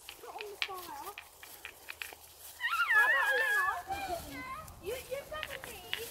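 Children's high-pitched voices: a loud squealing, wavering call a little before the middle, with quieter calls later. Scattered light clicks and crackles run through it.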